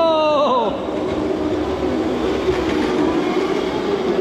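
Razor Crazy Cart electric drift carts running, with a steady motor whine and wheels scrubbing over concrete, echoing in a concrete parking garage. At the very start, a short pitched sound slides down and stops.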